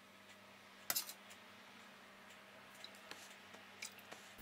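Metal spoon clinking against a stainless steel bowl while fat is skimmed off a sauce: a short cluster of clinks about a second in, then a few faint ticks.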